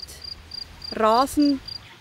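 A cricket chirping in a meadow: short, high-pitched chirps repeating evenly, about three to four a second. About a second in, a brief voice is heard over it.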